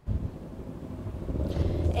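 Low, steady outdoor rumble picked up by a live field microphone, starting suddenly as the feed opens and growing slightly louder.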